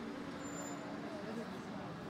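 Indistinct background voices over a steady low hum, with a brief steady tone about a second in.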